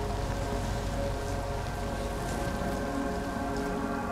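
A steady, even hiss with a soft drone of several held tones beneath it.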